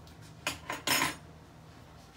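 A utensil knocking against a plate: three short clinks about half a second to a second in, the last the loudest.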